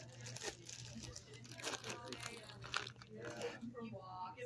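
A run of irregular crunching and crinkling noises, with a steady low hum underneath.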